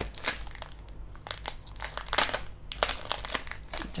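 Thin clear plastic wrapping crinkling in short, irregular bursts as hands work a comic book out of its tight plastic sleeve.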